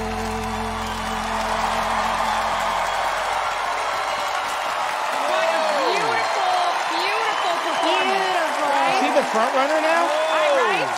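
A studio audience and panel applaud and cheer as the song's last notes fade out. From about halfway through, loud whoops and shouts rise and fall over the clapping.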